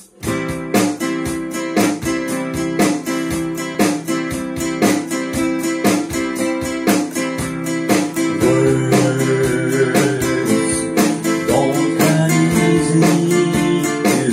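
Nylon-string classical guitar strummed in a steady rhythm as an instrumental intro. About halfway through, a harmonica in a neck holder joins with held notes over the strumming.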